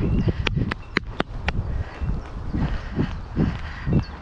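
A horse's hooves thudding softly on grass, about two or three footfalls a second in the second half, over steady wind rumble on the head-mounted camera's mic. In the first second and a half come five sharp clicks in quick succession.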